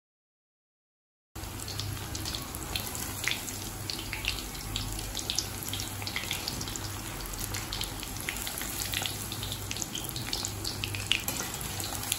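Flour-coated paneer cubes deep-frying in hot oil in a cast-iron kadai: a steady sizzle dotted with frequent sharp crackles and pops. The audio is dead silent for about the first second, then the frying comes in.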